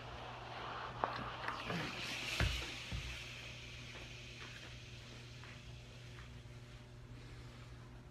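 A steam iron hissing as it passes over a crochet sweater for the first few seconds, with a dull knock about two and a half seconds in as the iron is set aside. After that there are only faint soft handling sounds of the fabric being smoothed on a towel.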